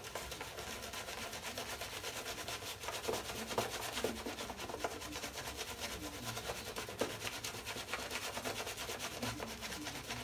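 Shaving brush scrubbing wet shaving-soap lather onto the face, a quick steady rubbing of wet bristles against skin and lather.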